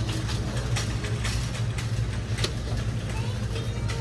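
Steady low hum of store background noise, with a string of short clicks and rustles from plastic-packaged items being handled on metal pegboard hooks.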